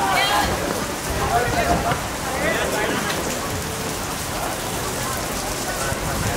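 Steady rain falling, a constant hiss, with a few players' voices calling out briefly at the start and again about halfway through.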